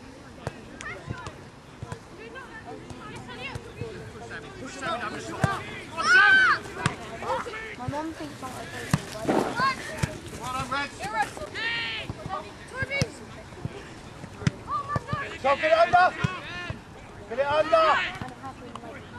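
Shouts and calls from people on and around a football pitch, several separate voices coming and going, loudest about six seconds in and again near the end, with some short knocks between them.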